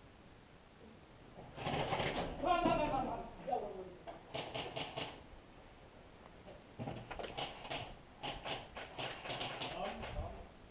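Airsoft guns firing several short bursts of rapid clicking shots, with a voice calling out once in the first burst.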